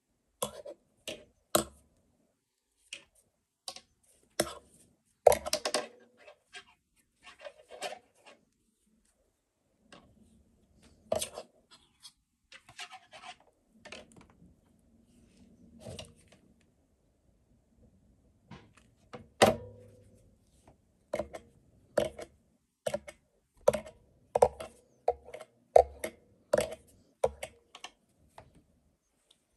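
Irregular light clicks and taps of hands handling a crocheted flower on a wire stem while wrapping yarn around it, close to the microphone. The taps come singly or in short clusters, with a brief quiet spell past the middle. The loudest knocks come about five seconds in and again a little before twenty seconds in.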